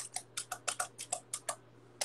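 Footswitches of a Saturno programmable pedal switcher clicking in a quick run, about ten clicks mostly in pairs, stopping at about one and a half seconds. They are stomped with a flip-flop in the fast 1-2-3-4-4-3-2-1 sequence that triggers one of the switcher's hidden functions.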